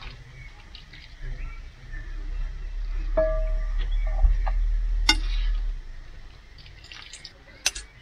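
Cooked spaghetti lifted dripping out of its cooking water with a plastic pasta server and dropped into a small enamel pot: water dripping and splashing. There is a short ring of the pot about three seconds in and a couple of sharp clinks of the utensil against the pots later on.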